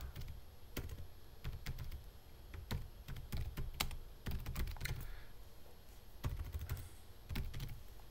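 Typing on a computer keyboard: irregular, quick keystroke clicks with short pauses between bursts of words.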